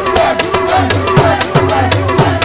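Sikh kirtan: tabla played in a fast, steady run of strokes, the bass drum's pitch sliding down on its strikes, over a held harmonium tone with voices singing.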